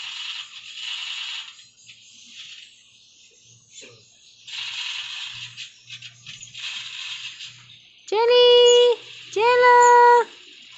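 Otter giving two loud, high-pitched squeals near the end, each held steady for under a second, after a few stretches of soft hissing noise.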